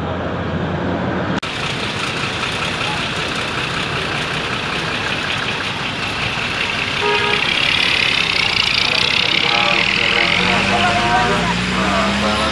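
Large buses running at a busy bus terminal, with traffic and people's voices mixed in. Near the end an engine note rises in pitch.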